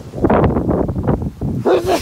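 A man laughing loudly in a choppy burst, then a short vocal sound near the end.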